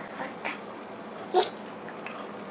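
Two brief vocal sounds from a toddler, a faint one and then a louder, short one about a second and a half in.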